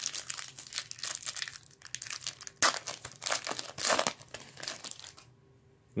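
Foil wrapper of a hockey card pack crinkling and tearing in irregular bursts as it is handled and opened. It stops a little after five seconds in.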